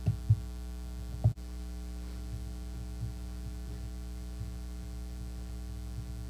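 Steady electrical mains hum in the recording, with a few dull thumps in the first second and a half, followed by a brief dropout.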